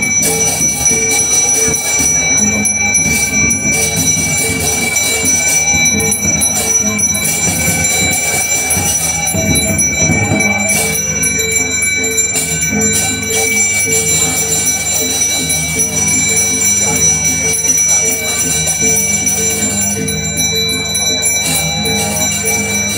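Balinese priest's genta, a brass hand bell, rung without pause, giving a continuous shimmering ring with a steady pulse.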